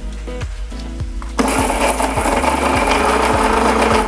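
Electric mixer grinder running, grinding dried red chillies: a loud, steady grinding noise that starts about a second and a half in and cuts off at the end, over background music with a steady beat.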